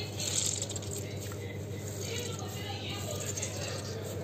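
Wet squishing and light splashing of water as a hand presses soaked lentil dumplings against a steel bowl to squeeze the water out of them, loudest in a short splash just after the start, over a steady low hum.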